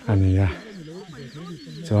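People talking: a loud voiced utterance of about half a second at the start, quieter voices in between, and a loud voice again at the very end.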